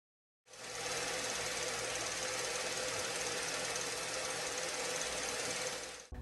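A steady mechanical whirr with a faint hum running through it. It starts about half a second in, after a moment of silence, and fades near the end.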